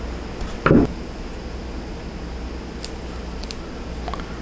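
Small hand-work noises from pushing a small screwdriver into the melted end of a braided polypropylene rope: a short dull thump under a second in, then a few faint light clicks near the end, over a steady low hum.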